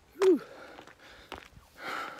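A man's short voiced gasp, a falling 'hah', about a quarter second in, then a hissing breath near the end. He is out of breath on an uphill climb where oxygen is low.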